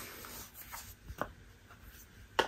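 Faint rubbing of a fingertip swirled over a pressed powder blush in a compact, with a couple of light clicks from handling the compact.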